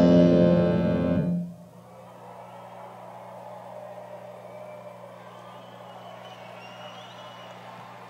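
Grand piano's loud final chord, held about a second and a half and then cut off as the keys are released. After it comes a faint steady background hiss with a low hum.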